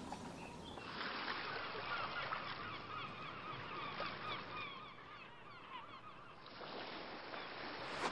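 Faint ambience of a flock of birds calling: many short, overlapping calls, each falling in pitch, that stop about six and a half seconds in.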